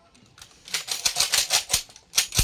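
Police rifle salute volley: a ragged string of about ten sharp cracks in quick succession, about a second long, starting just under a second in, as a line of rifles fire skyward not quite together.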